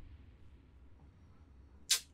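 A faint low hum, then a single brief sharp whoosh near the end.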